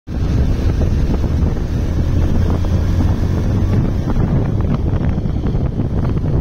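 Wind rushing over the microphone of a moving Bajaj Pulsar UG3 motorcycle, with the bike's single-cylinder engine running steadily underneath as a low hum.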